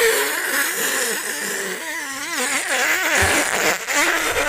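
A man making random nonsense vocal noises: one continuous, wavering voice whose pitch wobbles rapidly up and down.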